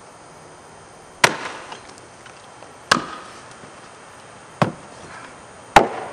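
Axe chopping into an upright standing block of wood, four sharp strikes a second or more apart, each with a short ringing tail. The axeman is cutting a springboard pocket into the block.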